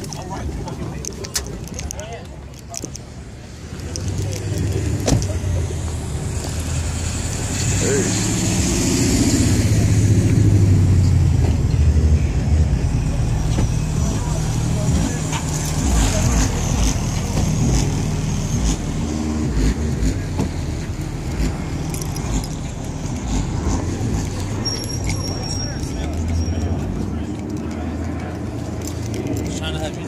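Car engine running with a low rumble, growing louder about four seconds in and loudest around ten to twelve seconds.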